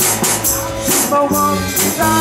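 Live rock band playing a passage between sung lines: electric guitar holding notes over a drum kit with regular cymbal hits.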